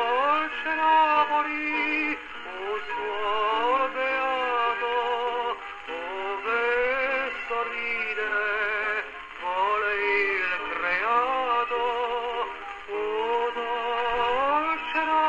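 Antique His Master's Voice horn gramophone playing a 78 rpm record of a singer with strong vibrato. The sound is thin and boxy, with no deep bass and no bright treble, typical of an acoustic reproducer and horn.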